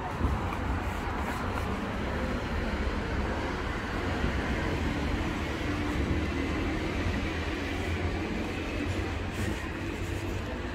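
Steady low rumble of passing traffic, with a faint hum in the middle.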